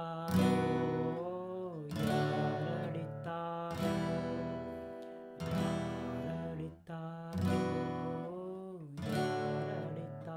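Yamaha steel-string acoustic guitar strumming slow chords in E minor, with a strong stroke about every second and a half and the chords ringing between. A man's voice sings the melody along with it, gliding between notes.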